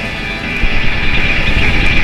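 A rock band playing an instrumental stretch of the song, with guitar prominent and no vocals. It swells louder about half a second in.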